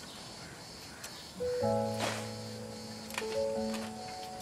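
Background music: after a faint quiet stretch, a soundtrack cue comes in suddenly about a second and a half in with several held, steady notes.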